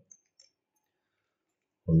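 A few faint clicks of a plastic Axis Cube twisty puzzle being turned by hand, early in an otherwise nearly silent stretch, before a man's voice starts again near the end.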